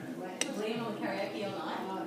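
A metal fork clinks once against a plate about half a second in, over an indistinct voice.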